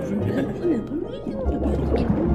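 Cartoon characters babbling in wordless, gliding gibberish voices over background music.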